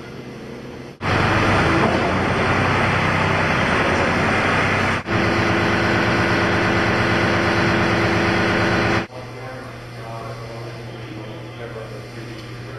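Loud, steady machinery noise with a constant hum. It starts abruptly about a second in, dips briefly near the middle, and cuts off abruptly about nine seconds in.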